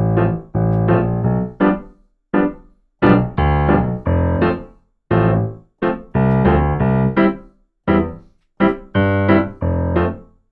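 Piano chords played on a stage keyboard in short, detached stabs with gaps between them, some held a little longer: the offbeat 'upbeat accent' chord pattern of one-drop reggae.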